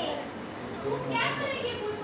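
Speech: a high-pitched woman's voice speaking lines.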